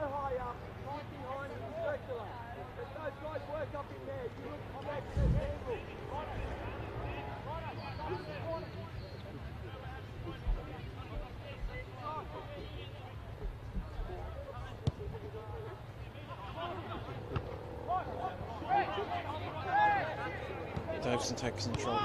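Field-side crowd and player voices at a football match: scattered distant shouts and chatter over a steady low rumble, with a dull thump about five seconds in.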